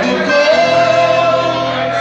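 Live accordion, viola caipira and acoustic guitar playing together, with a long wavering melody note held through the middle.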